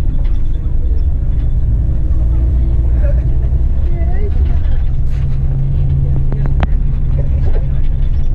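Steady low rumble of a coach's engine and road noise heard from inside the passenger cabin while it drives along, the hum deepening slightly about five seconds in.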